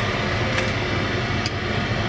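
A steady whirring noise with a low hum, broken only by two faint ticks.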